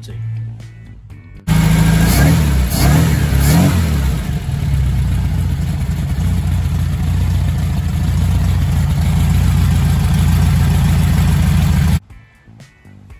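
Supercharged air-cooled VW flat-four engine, fitted with an AMR500 blower and an S&S Shorty carburettor, cuts in loudly about a second and a half in. It is revved in three quick blips, then settles to a steady idle.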